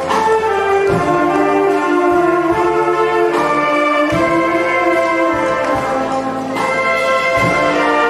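A volunteer fire brigade wind band playing: brass holding full chords that change every second or so, with sharp percussion strikes several times.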